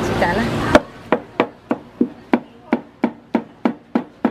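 Cleaver chopping barbecued pork (char siu) on a round wooden chopping block: a run of about a dozen sharp chops, roughly three a second. The chops start under a second in, just as loud background noise cuts off.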